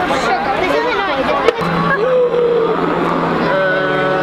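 Crowd of many people talking at once, with a short sharp click about one and a half seconds in.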